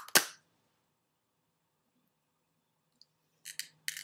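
Two sharp plastic clicks right at the start, as the plastic clamshell of a Scentsy wax bar is snapped open, then near quiet with a few short breathy sounds near the end.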